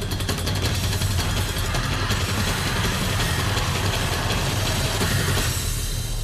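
Dramatic background score: a loud, steady rumbling drone with a fast rattling texture, thinning out near the end.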